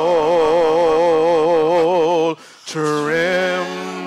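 Gospel praise team singing into microphones, holding a long note with a wavering vibrato. The sound breaks off briefly after about two seconds, then the voices slide up into a new held note.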